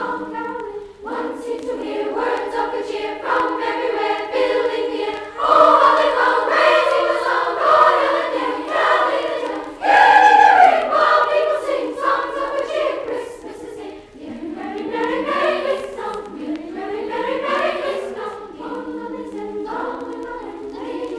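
School glee club choir singing, played back from a vinyl LP. The voices swell to their loudest about ten seconds in, then drop softer for a moment before building again.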